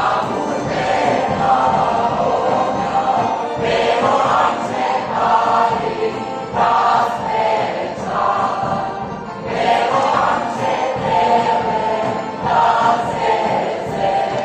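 A group of voices singing a Serbian folk song together, in repeated phrases that start about every three seconds.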